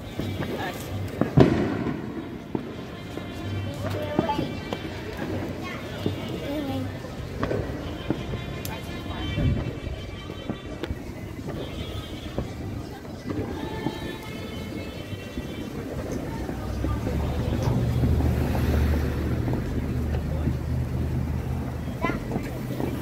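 Fireworks and firecrackers going off now and then, the sharpest bang about a second in, over music and voices.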